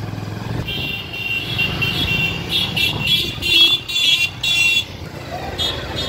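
Motorcycle running at low speed, with a steady low hum. From about one to five seconds in, a louder high-pitched sound comes in short repeated pulses, slightly wavering in pitch.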